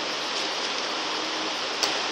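Steady, even background hiss of room and recording noise between sentences, with one faint click near the end.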